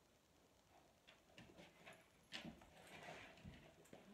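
Faint knocks, creaks and rustling of a person getting up from a wooden folding chair and taking a few steps on carpet, starting about a second in.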